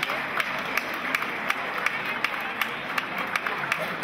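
Audience applauding, a dense run of individual claps.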